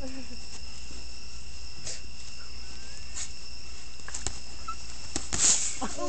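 Crickets chirring steadily at two high pitches, with a low steady hum underneath. A few short knocks are scattered through it, and a brief hissy burst comes about five and a half seconds in.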